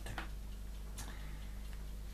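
Quiet room tone with a low steady hum and two faint ticks, about a second apart.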